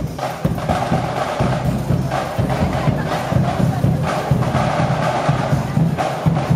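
Marching band playing as it passes: brass instruments (trumpets and a sousaphone) sounding sustained notes over drum beats.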